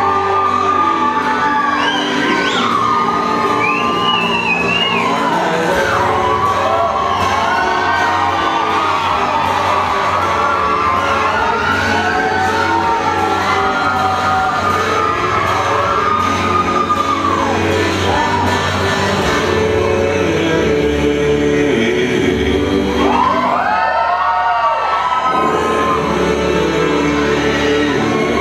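Loud music playing, with an audience whooping and cheering over it, the whoops swelling again near the end.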